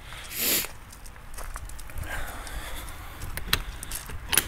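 Footsteps on gravel walking along a cargo trailer, with a brief rustle near the start, then a few sharp metallic clicks near the end as the side door's latch handle is taken hold of.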